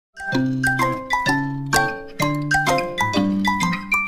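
Upbeat intro jingle of bright, bell-like struck notes over a bass line, in a bouncy run of about two to three notes a second.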